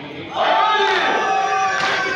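A group of men chanting a noha (Shia lament) together into microphones. They come in loudly about half a second in, with several voices holding long, sliding notes.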